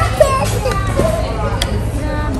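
A young child talking in a high voice, with a sharp click about a fifth of a second in and a fainter tick later, over a steady low rumble.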